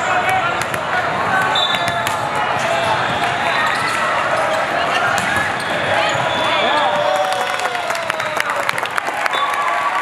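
Indoor volleyball game in a large echoing hall: a din of many voices, sneakers squeaking on the court, and sharp ball hits, which come thick and fast from about five and a half to nine seconds in during a rally.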